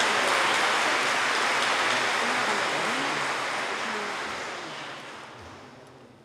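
Audience applauding, dying away over the last two seconds or so.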